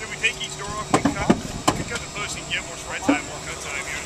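Indistinct voices talking, with a few sharp knocks about a second in.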